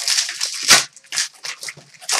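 Foil hockey card pack wrappers being torn open and crinkled, with cards handled, in a run of short rustles; the sharpest rip comes about three-quarters of a second in.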